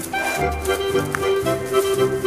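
Swiss Ländler folk music: an accordion plays the melody over a bass line that keeps a steady beat.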